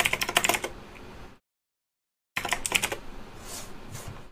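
Typing on a computer keyboard in quick runs of keystrokes. It breaks off for about a second in the middle, then resumes.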